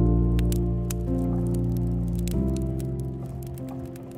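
Slow, soft ambient music of held chords, shifting to new notes about a second in and again just past two seconds. Over it, the scattered sharp pops and crackles of burning wood logs.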